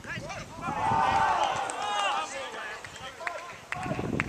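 Footballers shouting on the pitch: a long, loud raised shout with shorter calls about a second in, followed by a few sharp knocks near the end.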